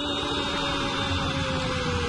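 Football commentator's long drawn-out shout held on one note, its pitch sagging slightly near the end, over steady stadium background noise and a low hum.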